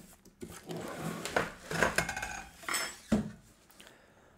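Metal lamp arms and sockets, wrapped in plastic bags, clinking and rattling against each other as they are slid out of a cardboard box: a run of short, irregular knocks, some ringing briefly.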